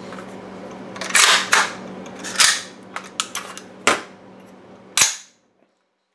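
Metallic clacks and clicks of an AR-15 worked by hand: the charging handle, a BCM Gunfighter with an oversized latch, is drawn back and the bolt carrier released, and the action is opened. It is a series of sharp clacks, the loudest about a second in, halfway through, and near the end.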